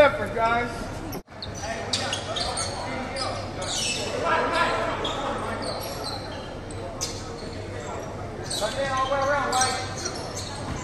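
Basketball game in a gym: voices calling out across the court echo through the hall, with a basketball bouncing on the hardwood floor and scattered short sharp sounds. The sound cuts out briefly about a second in.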